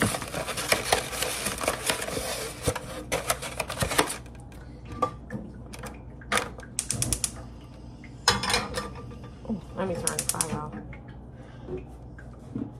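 Kitchen handling noises: about four seconds of dense rustling and rapid clicking, then scattered clicks, knocks and clatters as a frying pan is picked up and handled.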